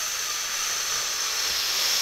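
Bambu Lab A1 mini 3D printer at work printing a part, heard as a steady high hiss with no clear rhythm.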